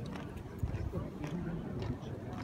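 Boots of a squad of royal guards marching on cobblestones: heavy, evenly spaced footfalls with sharp clicks, three strong ones about two-thirds of a second apart, under faint voices from onlookers.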